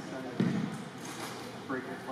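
Indistinct chatter of several people echoing in a large gym hall, with one sharp thud about half a second in.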